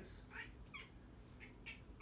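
House cat giving about five short, faint meows in quick succession, the first rising in pitch.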